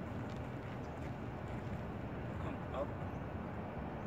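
Steady low outdoor background rumble, with a man saying a few words a little over halfway in.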